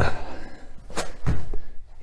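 Feet landing together on a thin foam exercise mat during double-leg mountain climbers: a few heavy thuds, the first at the start and two more about a second in, with hard breathing between them.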